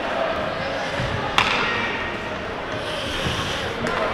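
Ice hockey rink ambience during a stoppage: a steady hum of the arena with one sharp knock about a second and a half in.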